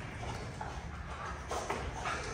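Faint shuffling of a boxer dog's paws on rubber floor matting as it moves into a sit, with a few light ticks about one and a half seconds in, over a low room rumble.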